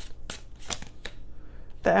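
Tarot cards being shuffled by hand: a run of short, sharp card strokes, about three a second, stopping near the end as a voice starts.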